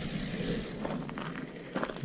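Mountain bike's rear wheel and chain spinning after the cranks are turned by hand: a steady whirring hiss that slowly dies away, with the newly fitted hydraulic disc brake pads still rubbing lightly on the rotor. A few faint ticks near the end.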